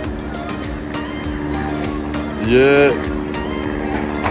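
Background music with steady held notes, with one short spoken word about two and a half seconds in.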